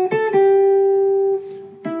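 Clean-toned semi-hollow electric jazz guitar playing a single-note line: two quick notes, then one note held for about a second as it fades, and a new note near the end. The phrase is a chromatic enclosure settling on G.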